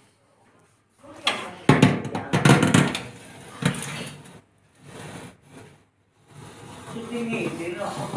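Metal baking tray scraping and clattering as it is slid onto an oven rack, with several sharp knocks in the first half.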